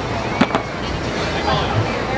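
A short, sharp double knock, the loudest moment, over crowd chatter: a cornhole bean bag hitting a wooden board.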